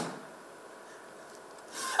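Quiet stage room tone with faint rustling during a pause in dialogue. There is a sharp click at the very start, and a soft noise builds near the end just before the voice returns.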